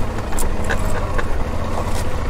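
2012 Suzuki V-Strom 650's V-twin engine running steadily at low revs, with a few light clicks.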